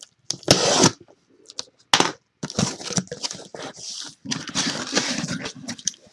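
A box cutter slicing through packing tape on a cardboard shipping box, with a few short sharp strokes. From about two and a half seconds in, cardboard scrapes and rustles as the box is opened and handled.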